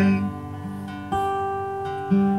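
Acoustic guitar played alone between sung lines: one chord ringing out and fading, then a new chord struck about a second in and left to ring.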